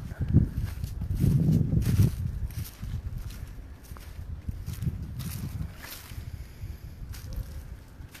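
Footsteps through a muddy yard and dry dead grass, with irregular crunches and rustles heaviest in the first two seconds, over a low rumble on the phone's microphone.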